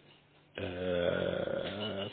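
A man's voice holding one long, steady hesitation sound, like a drawn-out 'euhhh', starting about half a second in after a brief pause.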